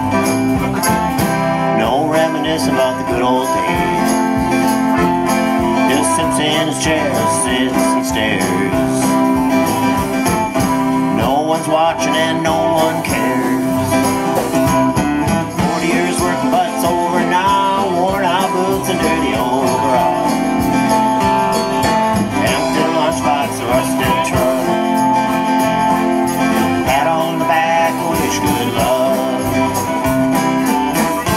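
Live band playing an instrumental passage on acoustic guitars, electric bass, drums and keyboard, with a jingling percussion and a lead line of bending notes over steady held chords.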